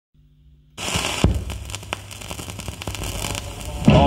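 Stylus running in the lead-in groove of a 78 rpm shellac record, heard through a loudspeaker: after a faint hum, crackle and sharp pops of surface noise start suddenly under a second in, with one loud pop soon after. The song's sung bass intro starts right at the end.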